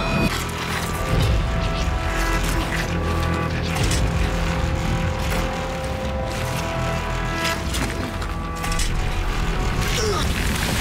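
Dramatic film score: several held tones over a heavy, continuous low rumble, with a few sharp hits struck through it.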